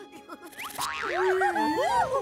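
Cartoon sound effects with wobbling, gliding pitch over light background music, starting a little under a second in.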